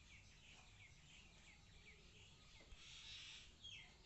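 Near silence, with faint, repeated short chirps of small birds in the background.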